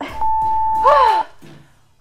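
Workout interval-timer beep: one long steady tone of about a second, marking the end of the final round. A woman's falling groan sounds over its end, and the backing music stops with it.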